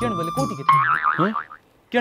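A cartoon-style 'boing' comedy sound effect, a wobbling, warbling twang lasting about three quarters of a second. It is cut off by a brief gap of near silence.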